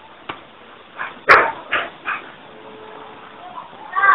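Four short, sharp dog-like barking yelps in quick succession about a second in, the second the loudest, after a soft click.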